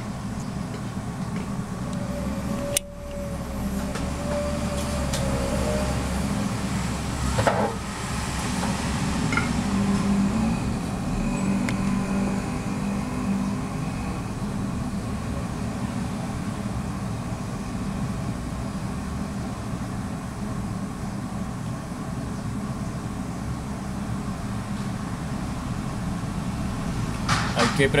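Steady low rumble of background noise, with a few sharp clicks and knocks as small tools and parts are handled on a workbench.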